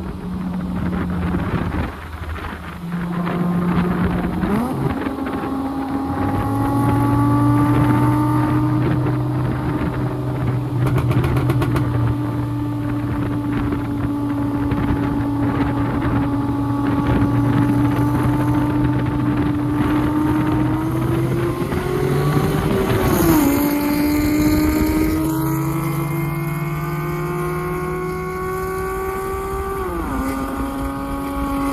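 Car engines heard from inside the tuned MK7 GTI, with a V8 car running alongside: a steady cruising note, then about 23 seconds in a quick rise and drop in pitch, after which the engine note climbs steadily as the cars accelerate hard.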